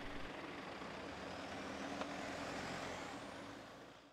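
Faint sound of a convoy of Toyota SUVs driving slowly past on a dirt road: a low engine hum over tyre noise, fading out near the end.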